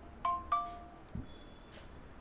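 Two-note electronic notification chime from the computer, the second note a little higher than the first, followed about a second in by a soft low thump.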